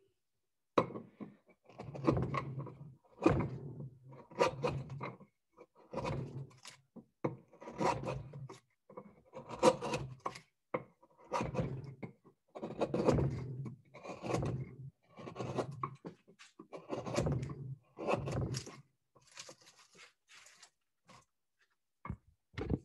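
A two-inch carving gouge pushed by hand through the dry wood of a bowl blank: a run of short scraping cuts, about one to two a second, fainter near the end.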